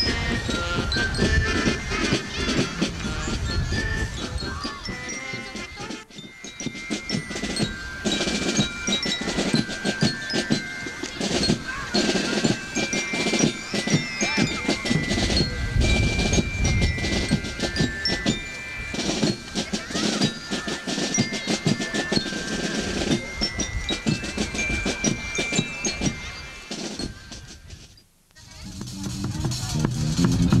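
Marching showband music: bell lyres ring out the melody in clear stepped notes over a steady beat of marching drums. The music dips briefly about six seconds in and fades away at the very end.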